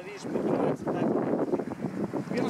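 Wind buffeting the microphone: an uneven, noisy rush with no steady tone.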